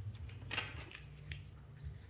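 Tarot cards being shuffled and handled by hand, faint short papery scrapes and light clicks.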